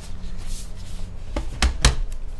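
Aluminium unibody MacBook Pro being turned over and set down on a desk: a light click, then two solid knocks in quick succession near the end as the case meets the desktop.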